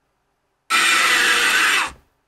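A loud recorded scream sound effect played over the stream's alert speakers, harsh and noisy, starting just under a second in and lasting about a second.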